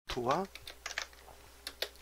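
A short voiced sound right at the start, then a few scattered computer keyboard keystrokes in small runs: text being typed into a document.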